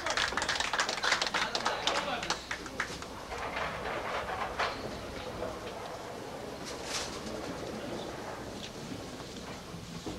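Candlepin bowling alley sounds: a dense clatter of short knocks and clicks for the first two or three seconds, then a quieter background of spectators' murmur with a few scattered knocks.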